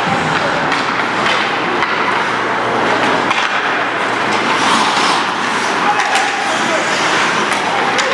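Ice hockey play in an indoor rink: skate blades scraping the ice and occasional clacks of sticks and puck, over indistinct shouting voices, all steady and fairly loud.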